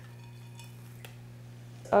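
Faint handling of a plant's root ball and coarse, chunky potting mix, with a small click about halfway, over a steady low hum.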